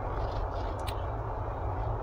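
Steady low rumble of a car in motion, heard from inside the cabin, with one faint click a little under a second in.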